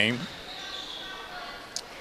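Gymnasium sound of a basketball game in play: a steady murmur of background noise with a basketball bouncing on the hardwood court, and one short sharp high click near the end.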